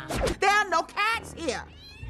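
A cat meowing several times in quick succession, with a fainter meow near the end.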